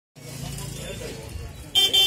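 Street-market bustle with people talking, and a short, loud vehicle horn toot near the end.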